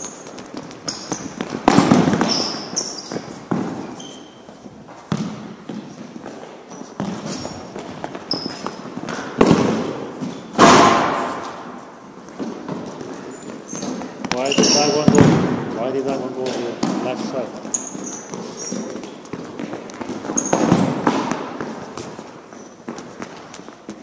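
A futsal ball being kicked and striking the floor and walls of a gymnasium: several loud, echoing strikes a few seconds apart. Short high squeaks from sneakers on the hard gym floor come in between.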